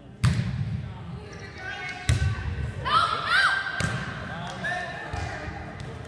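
Volleyball struck hard three times, the serve just after the start and further hits about two and four seconds in, each smack echoing around the gym. High squeaks and voices calling come in between.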